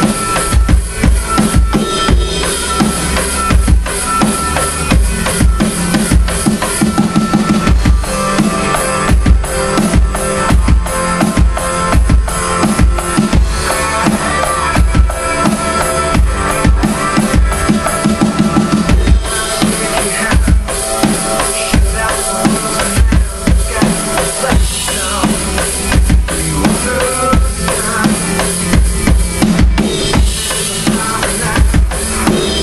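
Rock drumming on an electronic drum kit, played along to a recorded rock song, with a hard-hitting bass drum driving a steady beat.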